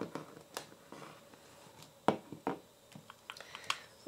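Light clicks and knocks of a plastic bottle of masking fluid and a small dish being handled and set down on a table: a sharper pair of knocks about two seconds in, then a quick run of small clicks near the end.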